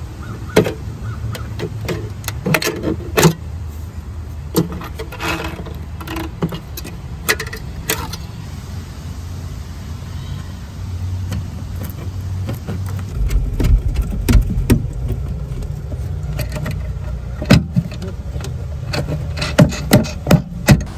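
Hand-tool work on metal: scattered sharp clicks and clinks of snips cutting sheet-metal flashing and of bolts and nuts being handled, over a steady low rumble that gets stronger about two-thirds of the way through.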